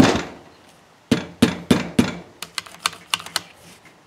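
Palm slapping the end of a bicycle handlebar grip to seat it on the bar: one sharp slap at the start, four firm slaps about a third of a second apart a second in, then a run of lighter quick taps.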